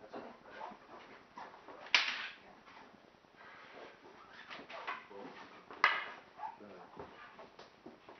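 Wooden training weapons clacking together twice, sharp knocks about four seconds apart, with fainter taps and shuffling between.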